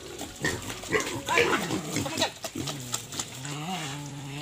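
Pigs grunting and squealing around a feeding bowl, with short irregular calls and clicks in the first half. About halfway in, a long, low, wavering call begins and holds.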